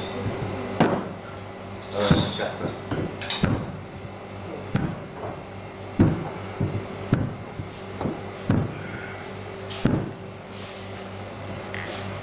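Repeated knocks on a kitchen counter as dough is worked by hand, about eight of them at a fairly even pace of roughly one every second and a bit, over a steady low hum.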